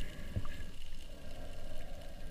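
Seawater sloshing over a low, steady rumble, with one dull knock about half a second in.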